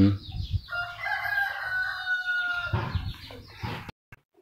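A rooster crowing: one long call of about two seconds that falls slightly in pitch near its end.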